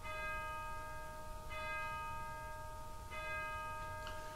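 A bell struck three times, about a second and a half apart, each stroke ringing on until the next.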